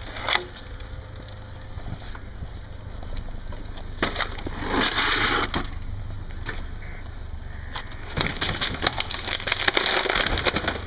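Car tyre rolling over a flat-screen LCD monitor on concrete, its plastic frame and cracked screen crunching and crackling. There is a stretch of crunching about four seconds in and a longer, denser run of crackles from about eight seconds in.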